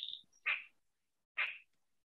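Three short, soft breaths in a pause between spoken phrases, about half a second to a second apart.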